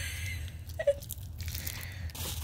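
Bubble wrap crinkling and crackling irregularly as it is handled and pulled out of a shipping box.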